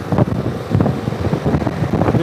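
Wind buffeting the microphone of a moving Piaggio MP3 three-wheeled scooter, in irregular gusts over a steady low rumble of engine and road noise.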